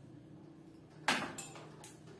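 Small pedestal fan motor humming steadily. About a second in comes a sharp clatter, then another knock and a lighter click, as the wire and clip connection is handled.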